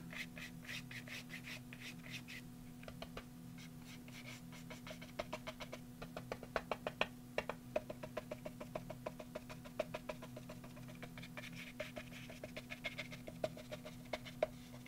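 A round stiff-bristled brush dabbing and dry-brushing paint onto a journal cover: a run of faint, quick bristle taps and scrapes, busiest through the middle.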